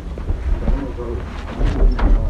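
Quiet murmured voices with a few small clicks, and a low rumble of handling or wind on the microphone near the end.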